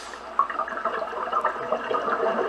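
Scuba regulator exhaust bubbles heard underwater: an irregular bubbling and gurgling that starts about half a second in.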